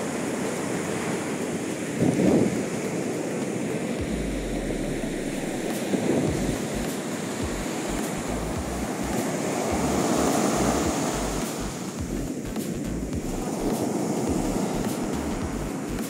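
Big ocean waves breaking and washing up a sand beach, a steady surf wash that swells and ebbs. Wind buffets the microphone with low rumbles, and a brief thump comes about two seconds in.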